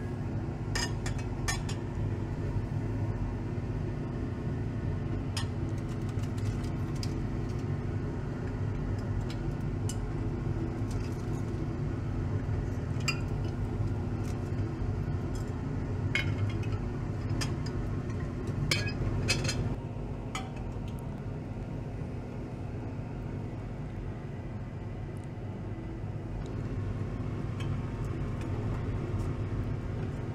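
Glass labware clinking: a glass beaker cover and beakers are lifted, set down and tapped together, giving scattered sharp clinks, most of them in the first two-thirds. A steady low rumble runs underneath.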